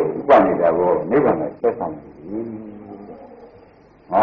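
A Buddhist monk's voice giving a sermon in Burmese, with drawn-out syllables, growing quieter in the second half.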